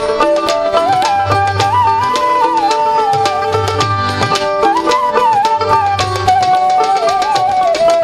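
Instrumental interlude of Bangladeshi Baul folk music: a wavering lead melody over a repeating hand-drum pattern, with plucked strings.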